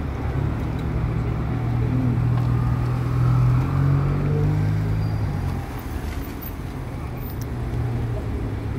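A road vehicle's engine running close by: a low steady hum that grows louder over the first few seconds and drops away about five and a half seconds in, over street traffic noise.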